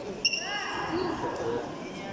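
Voices shouting in a large echoing sports hall, with a brief high steady tone, like a short whistle blip, about a quarter second in.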